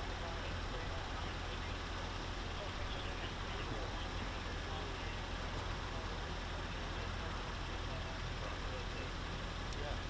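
Steady low hum of an idling vehicle engine, with faint voices in the background.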